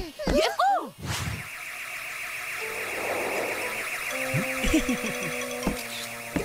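Small drone's propellers giving a steady buzz for about five seconds as it flies over, a cartoon sound effect, beginning about a second in, after a short shout.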